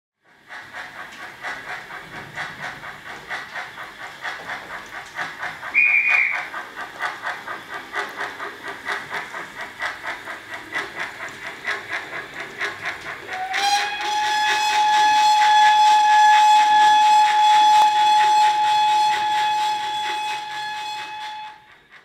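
Steam locomotive chuffing in a steady rhythm, with a short whistle toot about six seconds in; about halfway through, a long steady whistle starts and blows until just before the end.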